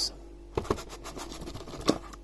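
Cardboard insert being pulled out of an Elite Trainer Box: a run of short scrapes and taps of cardboard on cardboard, the sharpest one near the end.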